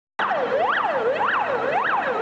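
Fire engine siren sounding in a fast up-and-down wail, just under two sweeps a second, starting suddenly just after the beginning.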